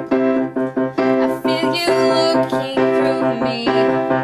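Upright piano played with repeated chords struck a few times a second, an early arrangement of a song.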